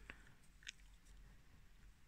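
Near silence: room tone, with two faint clicks, one right at the start and one a little under a second in.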